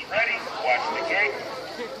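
A voice over a loudspeaker calling the BMX start cadence to riders waiting at the gate, in a few short phrases.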